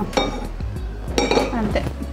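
A stainless steel kadai being moved on the cooktop: a metallic knock near the start and a ringing clatter of metal about halfway through.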